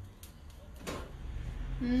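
Faint clatter of an aluminium frying pan being handled and lifted off a gas-stove grate, with a few light clicks and one knock about a second in, over a low steady hum. A woman starts speaking near the end.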